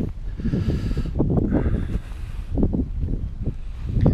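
Wind buffeting the camera microphone in a heavy, uneven rumble, with irregular soft thuds of footsteps through grass.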